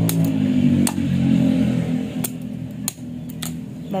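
About half a dozen sharp, irregularly spaced knocks of a machete blade striking coconut shells to crack them open. A low steady hum runs under them in the first second or so and then fades.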